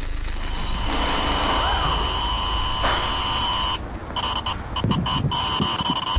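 Horror-trailer sound design: a low rumble under a steady high-pitched whine, with one brief rise-and-fall glide early on. In the last two seconds the whine breaks into rapid, irregular stutters.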